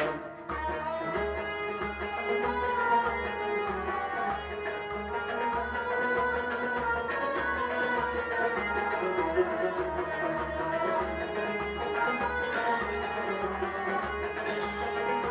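Instrumental passage of harmonium playing sustained melody with a plucked string instrument, over a steady low drum beat.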